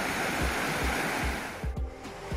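Steady rush of a mountain stream tumbling over rocks, with low thumps on the microphone; the water sound cuts off shortly before the end.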